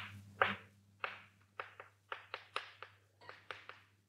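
Chalk writing on a blackboard: a string of short, irregularly spaced taps and strokes as words are chalked, over a faint steady low hum.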